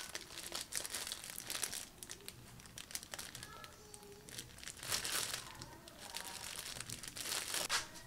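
Thin clear plastic bag crinkling around the hand as a baked bun is gripped and sawn in half with a serrated knife: irregular crackles, with a louder rustle about five seconds in.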